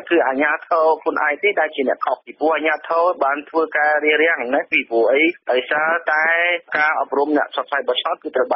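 A newsreader speaking continuously in Khmer, with a thin, radio-like sound.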